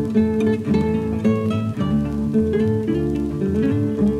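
Instrumental break in a folk song: acoustic guitar strummed and picked in a steady rhythm with no voice.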